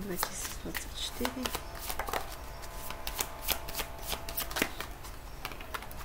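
A deck of tarot cards being shuffled by hand: a run of quick, irregular snaps and flicks of the cards.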